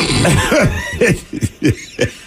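Hosts laughing in a string of short bursts that fall in pitch, with a cough-like edge.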